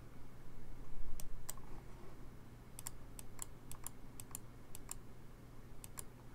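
Clicking at a computer as the moves of a game record are stepped through: two clicks about a second in, then a quick run of about five clicks a second for two seconds.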